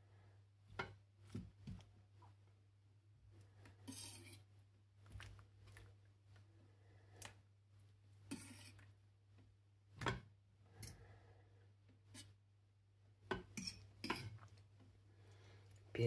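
Faint, scattered scrapes and knocks of a spatula against a metal frying pan as duck pieces, onions and pierogi are turned, with a low steady hum underneath.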